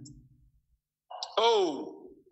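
A man's breathy vocal sound, falling in pitch, comes about a second in, after a moment of dead silence.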